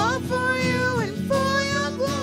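Worship band playing a song: a voice singing held notes in short phrases over acoustic guitar, electric bass and drums.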